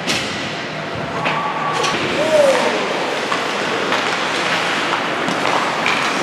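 Ice hockey rink noise: a steady wash of crowd and arena sound with a few sharp knocks. A short held tone sounds a little over a second in, and a single raised voice calls out about two seconds in.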